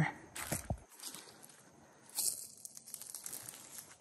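Footsteps on dry fallen leaves and grass: a few soft rustles and crunches, the louder ones about half a second and two seconds in.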